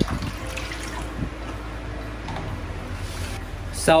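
Water being poured from a small plastic bowl into a shallow plastic tub, splashing onto the tub's bottom.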